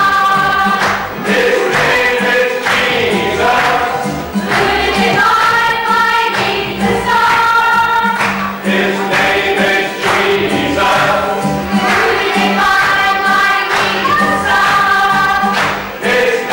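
A small mixed choir of men and women singing a song together, with hands clapping along in time.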